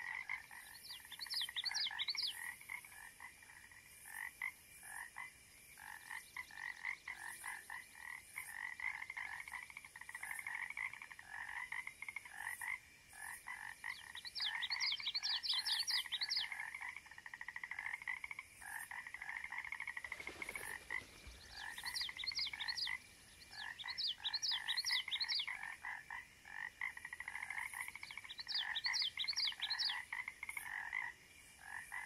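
Chorus of frogs calling: a steady run of quick, pulsed croaks, with short bursts of higher, rising notes every few seconds. A brief low rumble comes about two-thirds of the way through.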